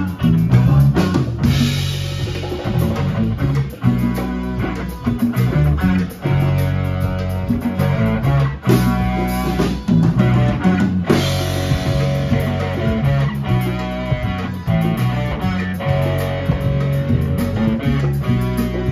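Live band playing an instrumental passage: electric guitar and electric bass over a drum kit, congas and timbales, with a steady driving beat.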